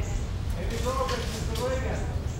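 A person's voice, indistinct, about a second in, over a steady low rumble, with footsteps of people walking on the colonnade floor.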